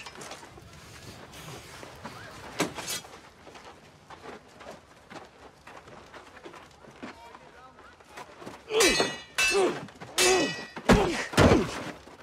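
Swords clashing: a few sharp metallic strikes with a brief ring, packed into the last few seconds along with grunts of effort, ending in a heavy thud as a fighter is knocked onto the ground. Before that, only a couple of light knocks.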